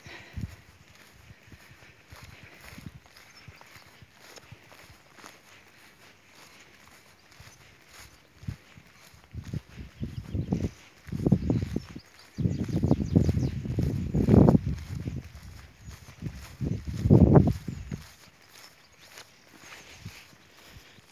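A person's footsteps through long grass. From about ten seconds in to eighteen seconds, loud low rumbling buffets on the microphone come in several gusts and drown them out.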